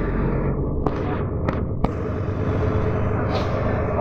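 Steady low rumble of a city bus's engine and tyres on a wet road, heard from inside the passenger cabin, with three sharp clicks in the first two seconds.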